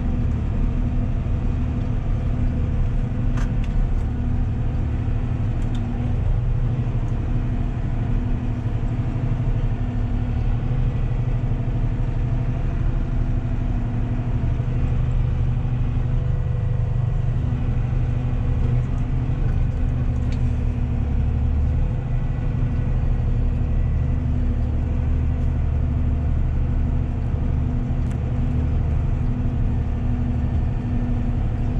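Valtra tractor's diesel engine running steadily under load, heard from inside the cab while it drives over a silage clamp to compact the grass.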